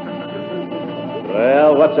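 Radio sound effect of a car horn honking from a car behind, heard as steady sustained tones. A man's voice breaks in near the end.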